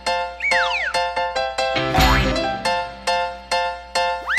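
Bouncy instrumental children's music: a steady run of short plucked notes, with a cartoon 'boing'-style sound effect about half a second in, a quick glide that rises and then falls in pitch, and a low thump about halfway through.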